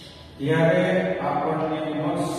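A man's voice in long, drawn-out, chant-like syllables, starting about half a second in and holding its pitch, with one step in pitch partway through.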